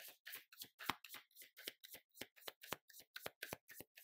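A deck of tarot cards being shuffled by hand, a faint, quick run of soft card slaps, about four a second.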